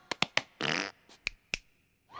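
Cartoon sound effects: a quick run of sharp clicks, a short noisy burst, then a few more scattered clicks.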